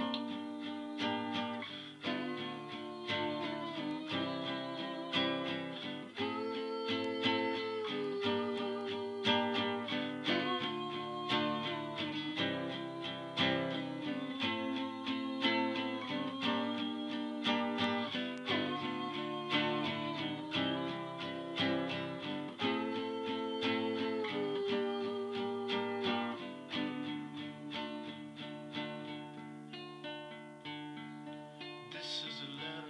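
Nylon-string classical guitar playing a repeating chord progression, plucked chords changing every couple of seconds, growing softer near the end.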